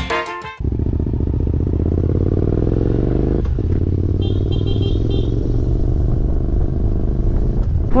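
A brief tail of music, then a Suzuki V-Strom motorcycle ridden two-up on the open road: its engine runs steadily, the pitch rising over the first few seconds as it gathers speed, with a click about three and a half seconds in. Three short high beeps sound just after four seconds.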